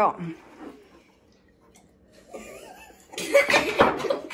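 A spoken "go", then a near-quiet pause while the drinks are sipped. About three seconds in comes a loud burst of coughing and laughter from a teenage boy who has just sipped fizzy apple soda.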